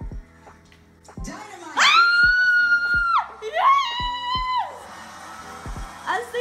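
Excited, high-pitched screaming: one long held scream about two seconds in, then a shorter, slightly lower one. TV broadcast audio plays underneath.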